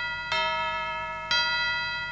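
Instrumental opening of a Telugu Christian devotional song: a bell-like chime struck about once a second, each note ringing and fading before the next.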